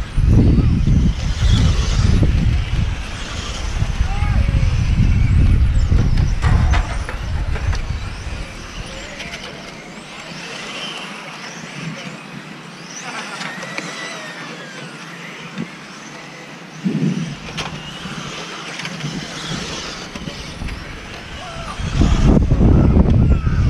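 Electric RC touring car's brushed motor whining, its pitch rising and falling with the throttle as the car laps the track. Wind buffets the microphone for the first several seconds and again at the end.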